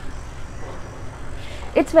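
A low, steady background rumble with no distinct events, and a woman starting to speak near the end.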